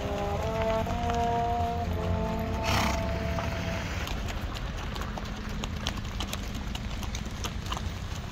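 Hooves of several walking horses clip-clopping irregularly on a dirt road over a low steady rumble. Held brass notes play through the first half and stop about four seconds in.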